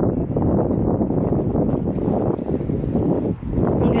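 Wind buffeting the camera's microphone: a dense, gusting rumble with a brief lull about three seconds in.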